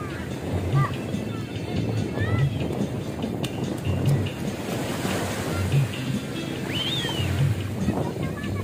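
Small waves washing onto a sandy beach, with wind on the microphone. Music with a steady low beat plays along, and a few short high voices call out now and then.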